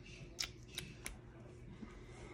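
Three faint, sharp little clicks in quick succession within about a second: plastic clicks from the lip gloss tube and its applicator wand being handled after swatching.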